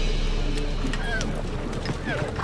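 Background music dying away, giving way to horses: scattered hoof clops and short whinnying calls about a second in and again near the end.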